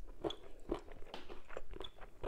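Close-miked chewing of meat, with wet mouth clicks coming a few times a second at an uneven pace.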